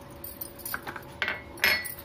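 A few clinks and knocks of a glass bowl and a small steel cup being handled as dried red chillies and chana dal are tipped into the steel cup; the last clink, near the end, rings briefly with a metallic tone.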